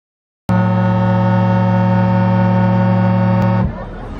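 A loud, steady electronic drone with many overtones, the sound of an animated logo sting; it starts about half a second in and stops abruptly near the end, giving way to a noisy fairground mix.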